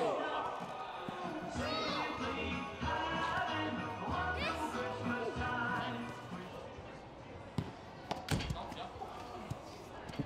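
Voices and background music, then a few sharp thuds of a football being kicked and bouncing, about eight seconds in.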